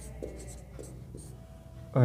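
Marker pen writing on a whiteboard: a run of short, scratchy strokes a fraction of a second apart.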